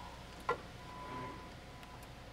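Faint steady machine hum in a shop, with one short sharp click about half a second in.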